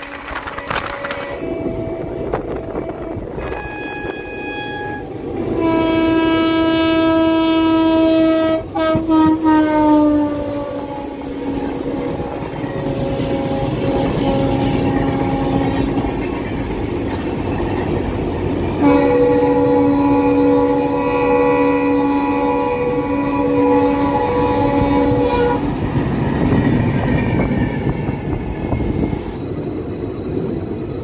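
Indian Railways train horns sounding over the rumble and clatter of a moving train. Two short blasts come first, then a long, loud blast that drops in pitch around ten seconds in. Later comes another long blast broken by short gaps.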